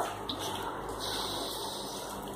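Steady background noise, an even hiss with no distinct event in it.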